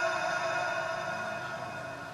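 The end of a muezzin's held note in the dawn adhan dying away in long reverberation through the mosque's loudspeakers, the echoing tone fading steadily with no new voice.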